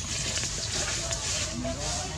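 Steady outdoor background noise with faint, short voice-like sounds scattered through it.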